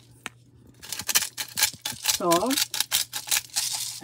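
Himalayan salt grinder being twisted over a pot of fish stew, a quick run of crisp, dry crunching clicks as the salt crystals are ground.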